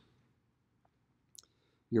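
Near-silent pause holding one short, faint click about a second and a half in, just before a man's voice starts again at the very end.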